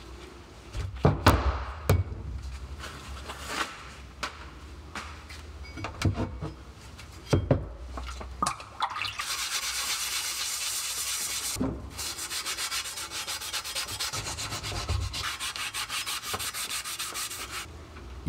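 An abrasive scouring pad scrubbed quickly back and forth over a wet steel axe head, taking off the black coating left by electrolytic rust removal. The first half holds scattered knocks and short scrapes of handling; about halfway in the scrubbing becomes steady and continuous.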